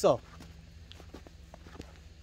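Faint footsteps of people walking, a few soft irregular steps after a short spoken word at the start.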